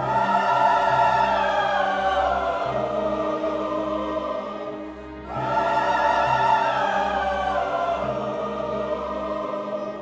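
A large mixed choir singing with a full symphony orchestra in two long phrases. The second phrase begins about five seconds in, and each one is loudest at its start, then sinks slightly in pitch and fades.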